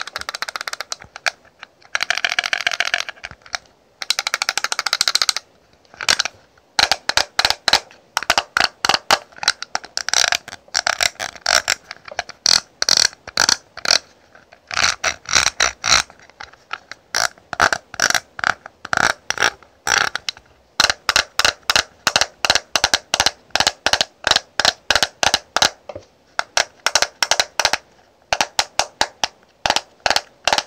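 Fingernails on a clear plastic Canmake compact case: three short stretches of scratching, then quick runs of sharp tapping clicks, several a second, with brief pauses between runs.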